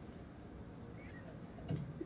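Quiet room tone with a few faint ticks in the second half, as tying thread is wrapped from a bobbin over lead wire on a hook in a fly-tying vise.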